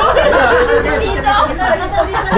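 Several people talking and chattering over one another.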